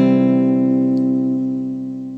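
Acoustic guitar's closing chord ringing out after the last strum of a song, with no voice over it. It fades steadily and dies away.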